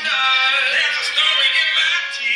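A recorded song playing, with a sung vocal line whose pitch bends and glides over the music.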